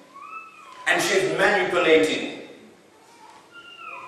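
A man speaking, bracketed by two short high-pitched gliding calls, one that rises and falls just after the start and one that falls near the end.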